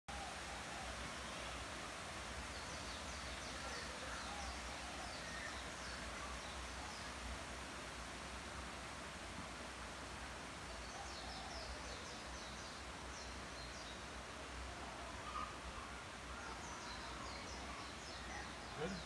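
Faint forest ambience: a steady hiss with a low rumble underneath, and bursts of short, high bird chirps about three seconds in, again around eleven to thirteen seconds, and near the end.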